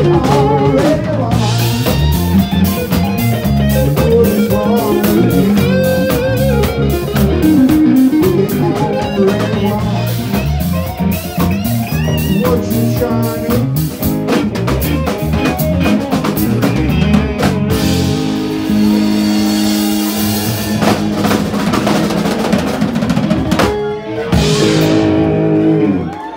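Live band of electric guitar, electric bass and drum kit playing an instrumental passage with steady drum hits. About 18 seconds in the drumming stops for a long held chord with ringing cymbals, then a last crash near the end, as the tune closes out.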